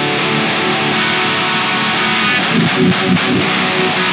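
Seven-string Jackson Dinky HT7 electric guitar with a Fishman Fluence Modern PRF-MH7 bridge pickup, playing a heavy, distorted metal riff in drop A tuning. The pickup's extra compression and output push the amplifier a little harder and bring out the low drop A notes.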